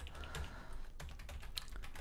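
A few faint computer keyboard keystrokes as a terminal command is edited, with a word deleted and retyped.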